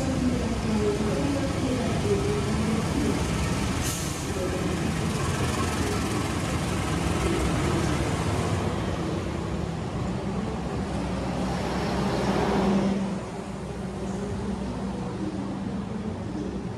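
Diesel locomotive pulling a passenger train into the platform, its engine running with a steady low drone that grows loudest as the locomotive passes. About thirteen seconds in, it gives way to the quieter rumble of passenger carriages rolling by. A brief sharp sound about four seconds in.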